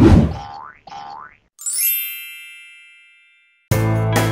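Animated logo sting sound effects: a hit, two quick rising slides, then a bright chime that rings and fades over about two seconds. Music starts just before the end.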